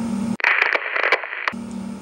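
A burst of crackling radio static, about a second long, starting a moment in and cutting off suddenly. It is an editing sound effect laid over a cut between shots.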